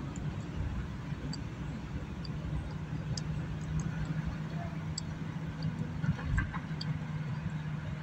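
Car interior while driving: steady road and tyre rumble with engine hum, and a steady low drone in the middle of the stretch.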